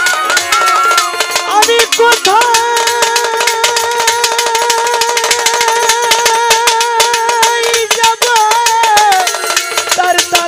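Bangladeshi Baul folk music played on violin and bamboo flute over fast, steady percussion. The melody moves at first, then holds one long note with slight vibrato from about two seconds in until about eight seconds, then moves on again.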